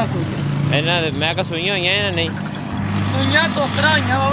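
A Beetal goat bleating: one long, wavering call lasting about a second and a half. A low engine hum comes in near the end.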